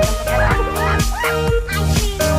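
Electronic background music with a steady beat about twice a second, held synth notes, and short chirpy notes that swoop up and down.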